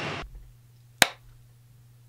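A single sharp click about halfway through, over a low steady hum of quiet room tone; just before it, louder gym sound cuts off abruptly.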